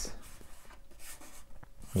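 Cardboard template rubbing and scraping against the PC case panel as it is pressed and slid into position, a faint uneven scratching with a few small ticks.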